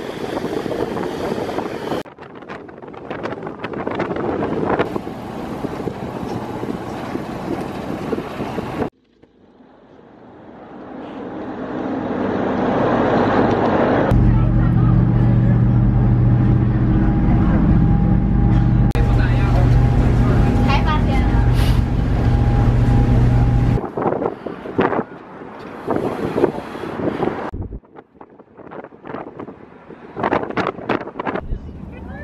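Boat engine running with a steady low drone over rushing wake water, building up over a few seconds and then loud and steady for about ten seconds in the middle; the rest is wind buffeting the microphone.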